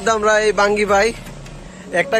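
A man talking, with a pause of about a second after the first second; a low rumble sits underneath the first part.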